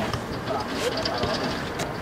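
Indistinct chatter and calls from several people, over steady outdoor background noise, with a couple of sharp clicks, one just under a second in and one near the end.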